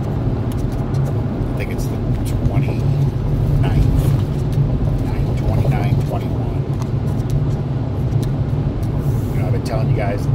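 Steady engine and road drone inside the cabin of a moving vehicle.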